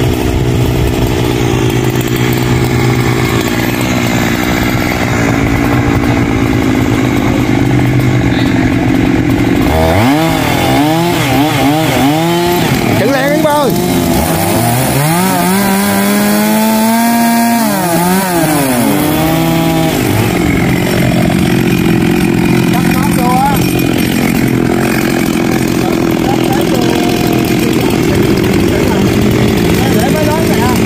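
Two-stroke chainsaw engine running steadily. From about ten seconds in, its speed rises and falls over and over for roughly ten seconds, then it settles back to a steady run.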